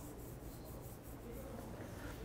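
Faint rustling of plastic-gloved fingers rubbing and parting hair on the scalp, a few soft scratchy strokes mostly in the first second.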